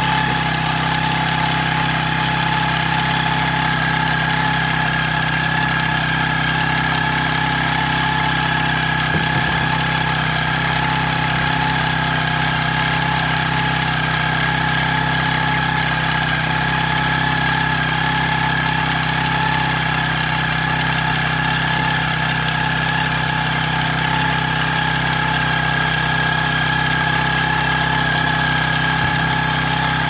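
Small engine of a motorized pesticide sprayer running at a steady, unchanging speed while the spray lance is in use: a constant hum with a steady whine over it.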